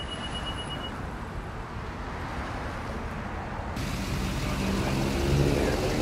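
Full-size van towing an Airstream travel trailer drives up and pulls in close, its engine and tyres growing louder over the last two seconds, over a steady wash of road traffic noise.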